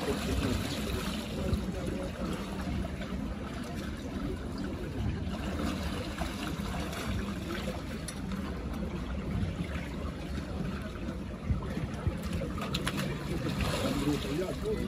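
Water splashing and sloshing in a cold plunge pool as bathers dunk and wade, over a steady noise of running water, with a few short clicks near the end.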